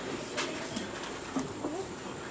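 A pigeon cooing softly in low, short notes, with a couple of light clicks in the first second.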